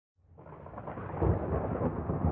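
Rolling thunder fading in from silence, a low rumble that swells about a second in.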